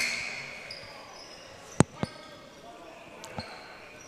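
A basketball bouncing on a hardwood gym floor: two sharp bounces a quarter of a second apart about two seconds in, and a fainter one near the end, over low hall noise.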